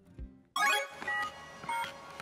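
Short electronic music jingle starting suddenly about half a second in, with a few bright, beep-like synthesised notes at different pitches.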